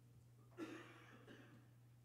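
Near silence with a steady low electrical hum. About half a second in comes one short sound from a person, lasting about a second.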